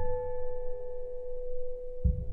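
Film score holding one steady, pure ringing tone, like a struck tuning fork or singing bowl, unchanging through the moment.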